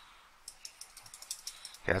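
Rapid small clicks from computer controls at the desk, about eight a second, starting about half a second in.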